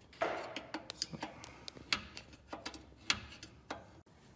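Screwdriver clicking a VW Beetle front drum brake adjuster round through the backing plate, a run of irregular clicks after a short scrape about a quarter second in. The adjuster is being turned to bring the brake shoes out toward the drum.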